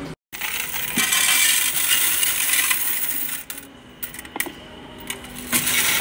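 Copper euro cent coins clattering as they are tipped into a Coinstar coin-counting machine's tray and run through it. The clatter is dense for the first few seconds, thins out in the middle, and picks up again near the end.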